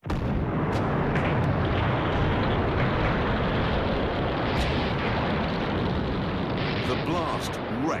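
A huge explosion bursts in suddenly out of silence, then runs on as a continuous heavy rumble of blast with scattered sharp cracks of debris. It is the delayed charge in the explosive-laden destroyer HMS Campbeltown going off and wrecking the dock gate, as a dramatised effect.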